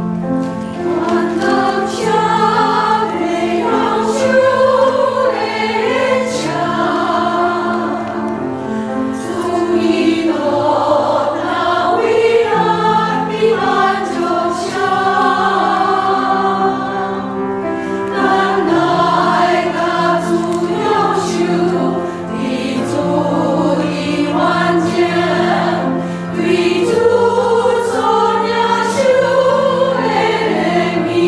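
Choir singing a hymn in several parts, with long held notes.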